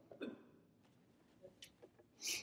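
Near silence: quiet room tone, with a short faint vocal sound just after the start and a few faint ticks in the second half.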